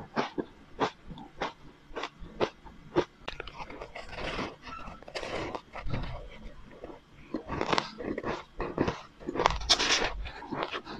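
Close-miked crunching and chewing of powdery crushed ice coated in matcha powder: irregular sharp crunches about every second, loudest near the end.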